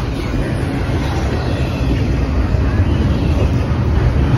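Double-stack intermodal container train passing close by: a steady, loud rumble of the cars' wheels rolling over the rails.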